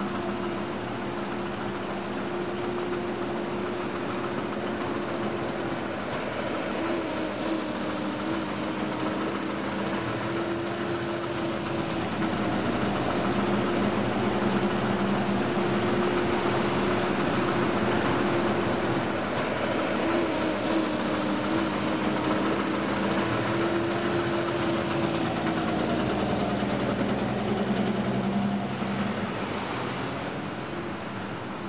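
City street traffic: the broad wash of passing vehicles with a steady low engine hum from idling vehicles, growing a little louder partway through; the hum fades out near the end.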